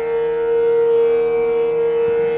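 Bamboo bansuri holding one long, steady note, with a faint steady drone behind it.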